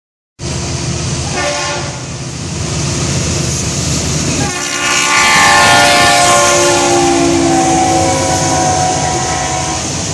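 Lead locomotive of a Norfolk Southern intermodal freight train sounding its multi-tone air horn: a short blast about a second and a half in, then a long loud blast from about four and a half seconds that drops slightly in pitch as the locomotives pass close by. A steady low rumble of the diesel locomotives and rolling cars runs underneath.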